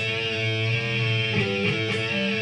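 Electric guitar double stop, C sharp and A played together and bent up a half step to D and B flat, the blue note in E minor, ringing sustained with the pitch wavering slightly past the middle.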